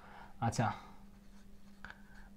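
Felt-tip marker writing on a whiteboard: faint scratchy rubbing strokes, with a brief sharper stroke near the end.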